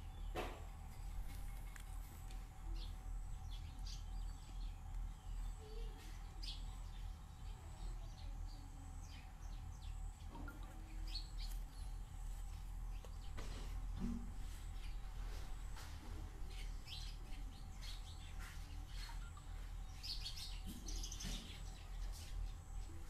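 Birds chirping in the background, short high calls scattered irregularly through, over a steady low rumble.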